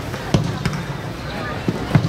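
A football being kicked and dribbled on artificial turf: about four sharp thumps of foot on ball, two close together early and two near the end, with players' voices around.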